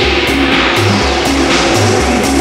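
Tech house DJ mix: electronic dance music with a steady beat, a pulsing bass line and regular percussion hits.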